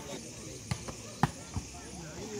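A volleyball struck by players' hands and arms during a rally: three or four sharp slaps, the loudest a little past a second in, over faint crowd voices.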